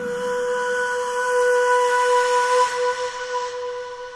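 A single long synthesizer note held at a steady pitch in a hardstyle track's breakdown, a pure, whistle-like tone with a few faint overtones that fades away in the last second.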